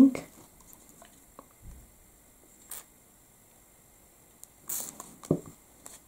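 Quiet handling sounds at a craft table: a few faint clicks, then a brief rustle and a soft knock near the end as sheets of vellum and paper are handled.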